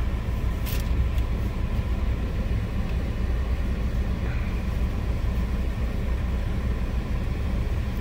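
Steady low rumble of a car, heard from inside its cabin, with a light click a little under a second in.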